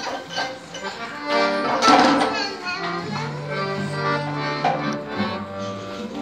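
Piano accordion playing held chords, settling into steady sustained notes about halfway in, with children's voices and chatter over the first couple of seconds.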